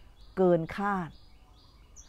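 A woman speaking two short words in Thai, then a quiet background with faint, short high chirps.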